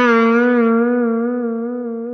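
A single clean electric guitar note, the third fret of the G string, held with slow, exaggerated vibrato. Its pitch wavers gently up and down as the note slowly fades.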